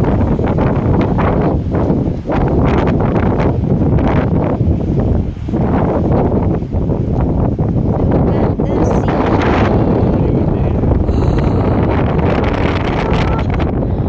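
Wind buffeting a phone's microphone: a loud, steady low rumble with small gusty dips.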